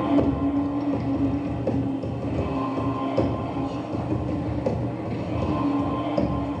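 Live dark ambient ritual noise music: a held droning tone over a dense low rumble, with scattered faint clicks. The drone thins out in the middle and swells back toward the end.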